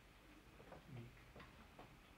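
Near silence: room tone in a pause between spoken sentences, with a few faint ticks.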